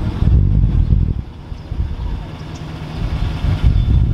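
Low, steady rumble of a Chevrolet Silverado pickup's engine idling.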